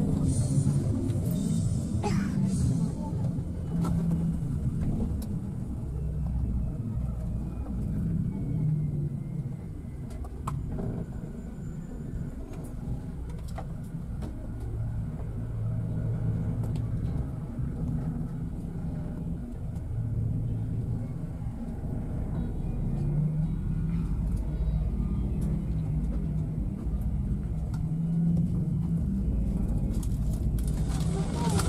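Low, continuous rumble of engine and road noise inside a moving double-decker bus, its drone shifting slightly in pitch and loudness.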